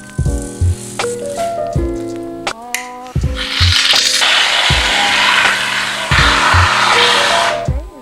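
Background music with a steady beat. From about three seconds in until near the end, a long hiss of an aerosol can spraying foam plays over it.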